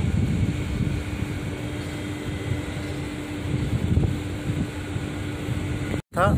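Wind rumbling and buffeting on a phone microphone outdoors, over a steady low mechanical hum with one constant tone.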